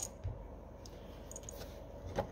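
Faint, light clicks of small metal carburetor parts as the main jet is fitted back into the carburetor body by hand, over a low steady room hum.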